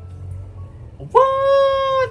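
A man's voice holding one high, drawn-out note for just under a second, starting a little past halfway, over faint low music.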